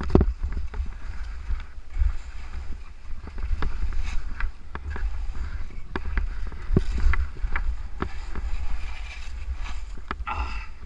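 Skis hissing and scraping through snow during downhill turns, with irregular sharp scrapes and knocks from skis and poles. Wind rumbles on the helmet camera's microphone underneath.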